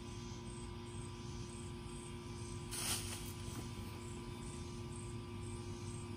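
A brief leafy rustle-swish about three seconds in as an insect net is swept through shrub foliage, over steady outdoor hum and faint repeated insect chirping.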